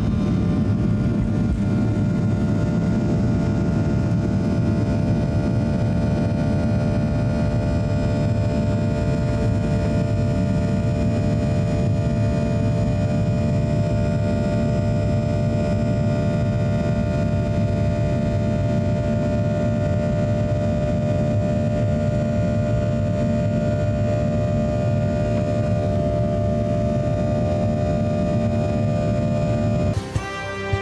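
Boeing 737-800's CFM56-7B turbofan engines at takeoff thrust, heard from inside the cabin: a steady loud roar with a stack of whining fan tones, through the takeoff roll and into the initial climb.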